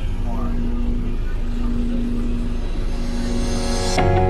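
Steady low drone of a moving vehicle's engine and road noise, heard from inside the cabin, with a hiss rising near the end.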